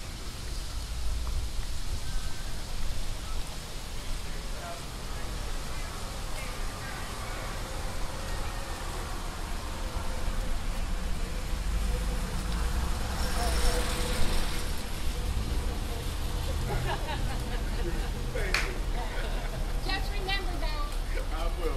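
Street ambience: a steady low rumble of road traffic with faint, indistinct voices, which grow clearer near the end as pedestrians pass close by. A brief burst of hiss comes about thirteen seconds in.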